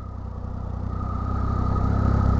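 Triumph motorcycle engine running at low speed while the bike rolls across dirt, its steady low note getting gradually louder.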